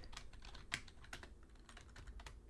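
Faint typing on a computer keyboard: a handful of separate, irregularly spaced keystrokes.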